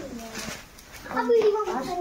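People's voices talking and calling, with a quieter gap around half a second in and a louder stretch of voice from about a second in.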